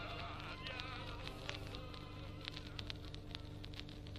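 End of a 45 rpm vinyl single: the last faint notes of the music fade away under record surface noise, with many scattered clicks and pops and a steady low buzzing hum.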